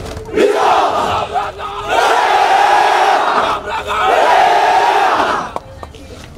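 Hundreds of soldiers shouting a military unit chant (yel-yel) in unison: three long massed shouts of about a second and a half each, with short breaks between them.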